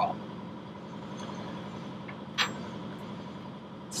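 Steady low mechanical hum in the background, with one brief hiss about two and a half seconds in.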